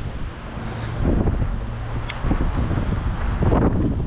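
Wind rumbling on the microphone, with a few scattered footsteps on a dirt path.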